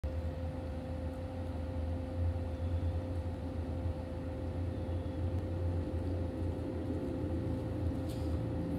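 Steady low mechanical hum carrying one constant mid-pitched tone, with no change in speed or level.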